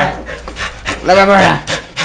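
Excited dog greeting, panting, with a long rising-and-falling "woo" call about a second in.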